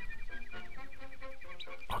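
Faint 1930s cartoon soundtrack: a flute tune played as a quick run of short repeated notes, with birds chirping along. A steady high tone runs beneath it.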